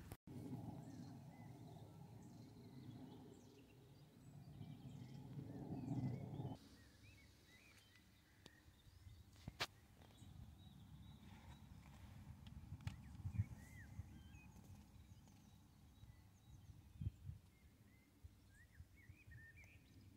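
Faint outdoor ambience: small birds chirping here and there, over a low wind rumble on the microphone that stops about six seconds in. A single sharp click comes near the middle, and a few soft knocks follow later.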